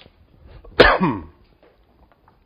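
A man coughing once, a sudden loud cough about a second in that trails off quickly.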